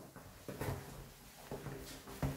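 Footsteps on a tiled floor: a few short knocks spaced irregularly, over a faint low steady hum.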